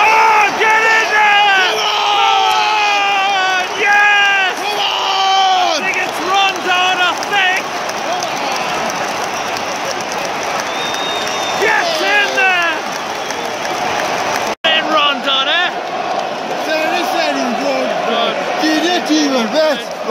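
Football stadium crowd chanting and singing together, strongest for the first few seconds and again about two-thirds through, with a steady din of crowd noise in between.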